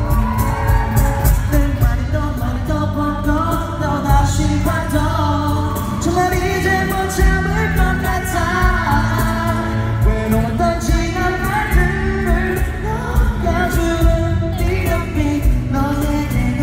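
Live pop-rock band: a male lead vocalist singing over acoustic guitar and drums, recorded from the audience through the hall's sound system.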